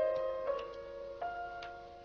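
Slow, soft background piano music: three single notes struck about half a second apart, each ringing on and fading away.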